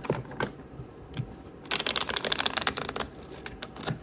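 Tarot cards being shuffled by hand. A few light card taps come first, then a dense run of rapid clicks lasting about a second as the two halves of the deck are riffled together, then a few more taps near the end.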